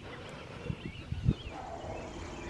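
Footsteps climbing front steps: a few soft thuds about a second in, with faint high chirps in the background.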